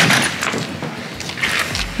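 Plastic kayak hull scraping and knocking as it is pushed into the cargo area of a minivan, loudest at the start and easing off.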